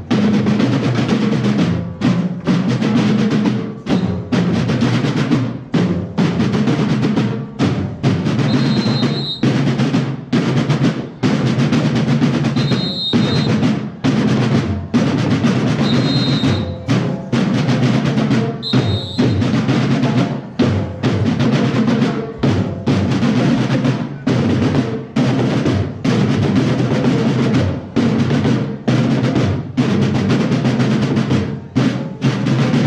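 A marching drum corps of snare drums and bass drums playing a continuous cadence with rolls, broken by short gaps every second or two.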